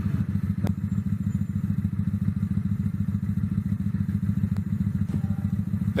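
Motorcycle engine running steadily with a low, fast, even pulsing, with a sharp click about half a second in and another near the end.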